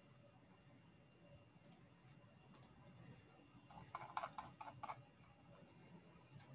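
Near silence with faint clicks: a few scattered ones, then a short run of quick computer-keyboard typing about four seconds in.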